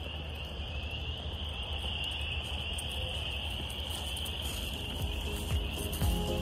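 A dense chorus of frogs calling all at once, merging into one continuous high trill with no breaks.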